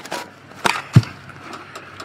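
A few knocks and clicks, the loudest a low thump about a second in: handling noise from the handheld camera being moved and bumped.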